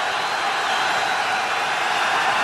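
Steady noise from a large stadium crowd at a college football game: the home fans are making noise while the visiting offense lines up at its own goal line.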